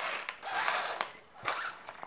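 Sucking through the straw of a Capri-Sun foil drink pouch: three short, noisy slurping pulls with a few small clicks.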